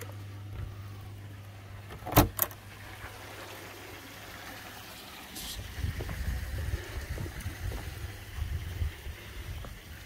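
A low hum stops about half a second in, two sharp knocks follow about two seconds in, and from about halfway an uneven low rumble of wind on the microphone.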